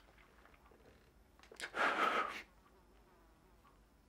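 A man crying: one short sob, under a second long, about a second and a half in, against a quiet room.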